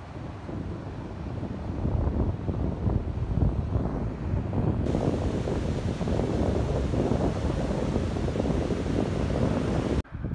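Wind buffeting the microphone in gusts, over the rush of the Chikuma River running brown and in flood after Typhoon Hagibis. The gusting grows stronger about two seconds in.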